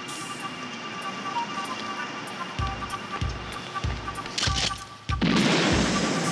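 Tense drama score with a low drum beat about every 0.6 s, then a sudden loud blast about five seconds in that carries on as a dense burst of noise while sparks erupt from a car.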